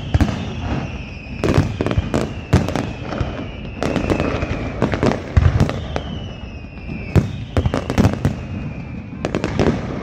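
Aerial fireworks display: a rapid, irregular run of bangs and crackling reports from bursting shells, with long whistles that slowly fall in pitch, one through the first half and another a few seconds later.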